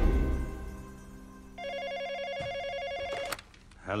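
Film score music fading out, then a landline telephone ringing: one fast-trilling ring lasting under two seconds, cut off abruptly with a click as the call is answered.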